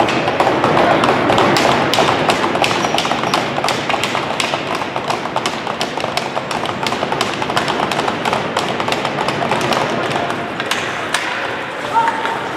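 Ice hockey on-ice sounds in a large, echoing arena: many short, sharp taps and clacks of sticks and puck on the ice, several a second, over a steady noise of skating.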